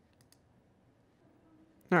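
Near-silent room tone with a couple of faint computer mouse clicks early on, as a keyframe is dragged in editing software.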